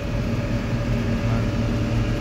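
John Deere 4850 tractor's six-cylinder diesel engine running steadily, heard from inside the cab as an even, low drone.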